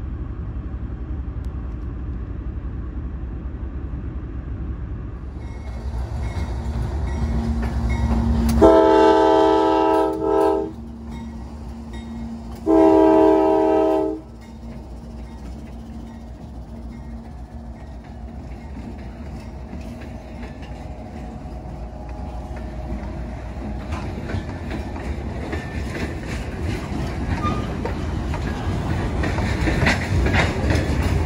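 Diesel freight locomotive horn sounding two blasts, the first about two seconds long and the second about a second and a half, over a low rumble. Afterwards the train rumbles past with wheels clacking over the rails as the freight cars roll by.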